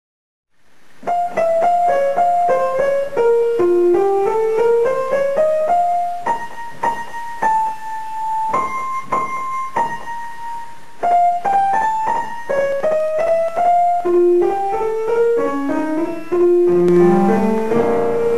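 Challen upright piano played solo: a quick melodic line of running notes in the treble, beginning about a second in, with a few longer held notes midway and lower bass notes joining near the end.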